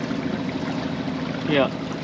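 Sailboat's engine running steadily at low speed, a low even drone under the sound of water washing along the hull.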